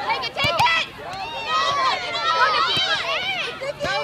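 Several high-pitched voices of spectators and young players shouting and calling out at once across a soccer field, the calls overlapping and growing louder after about a second.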